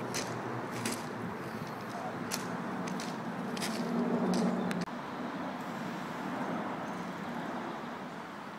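Steady traffic rumble with several short, high spray-paint hisses over the first half. A low hum swells just before the middle and the sound breaks off abruptly, then the rumble resumes.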